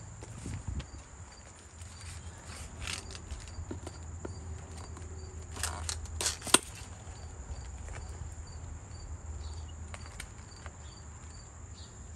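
Insects trilling steadily, with short chirps repeating about twice a second over a low hum. About six seconds in come leaves rustling and a sharp snip of hand-held garden snips cutting a stem, the loudest moment.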